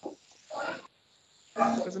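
Speech only: a student's voice over an online-class call answers 'present' near the end, after two brief voice fragments.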